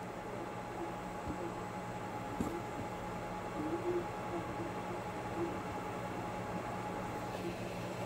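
Steady background room tone: an even low hum with a faint hiss and a thin steady tone, broken by faint, brief, indistinct blips.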